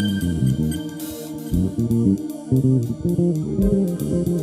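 Live instrumental band music led by a prominent electric bass guitar, with a drum kit keeping a steady beat and an electric keyboard.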